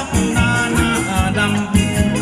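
Live band playing upbeat Thai ramwong dance music through large loudspeakers, with a steady beat of about three strokes a second and singing over it.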